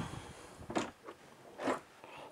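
Caravan washroom door being opened by its lever handle: a few short clicks and scrapes from the handle, latch and door, the two loudest about three-quarters of a second and just under two seconds in.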